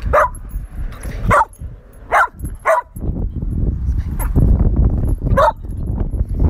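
A dog barking: about five short barks, spaced unevenly, with a longer gap before the last. Low rumbling noise sits under the second half.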